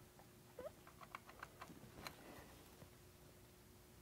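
Faint small clicks and light scrapes of hand work: a pencil marking wood along a metal hinge, clustered in the first half, including one quick rising scrape.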